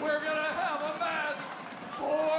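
Raised voices of several women shouting over one another in a heated face-off, with no words standing out clearly.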